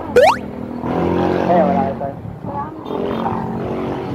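A quick rising whistle-like glide right at the start, then voices talking indistinctly over a steady low hum.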